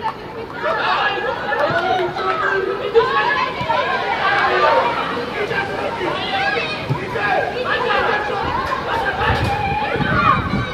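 Several people shouting and calling out over one another, continuously.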